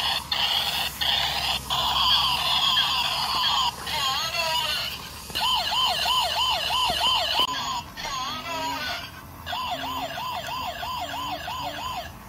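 Toy police car's electronic siren sounding, cycling through patterns: a steady warble, a slow up-and-down wail, and a fast yelp of about three rises a second. It is a little quieter from about eight seconds in.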